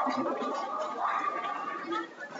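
Bowling alley sound: a steady rolling rumble, most likely a bowling ball travelling down the lane, with people talking.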